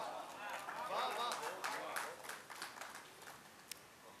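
Faint, off-microphone voices in a hall, with a few light clicks, fading out toward the end.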